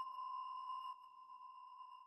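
A faint, steady, high held tone from the background score, like a sustained synth note. It fades down after about a second and trails away.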